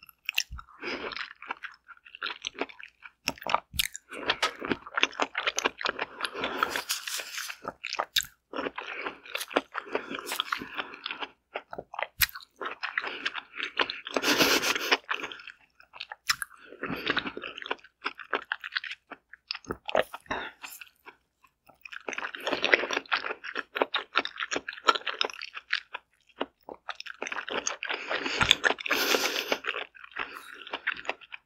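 Close-up biting and chewing of a whole steamed Korean zucchini, in bursts of clicking mouth noises with short pauses between them.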